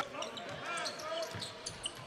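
A basketball dribbled on a hardwood court during live play, with faint voices from players and spectators.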